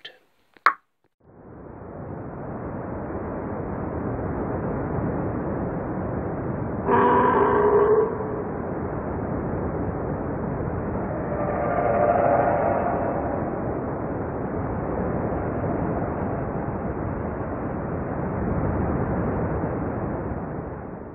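A steady rushing roar swells in after a click. A short horn-like tone sounds about seven seconds in, and the roar swells again around twelve seconds.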